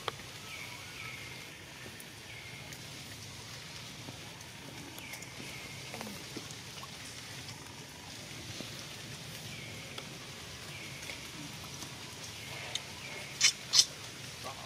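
Steady outdoor background with faint short high chirps every few seconds. Near the end come two sharp, loud, high-pitched squeaks close together.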